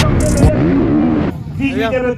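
Motocross bike engines revving loudly, with rising and falling pitch, cutting off abruptly just over a second in as a man's voice takes over.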